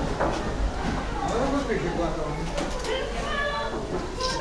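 Indistinct talking of people nearby, with no other distinct sound standing out.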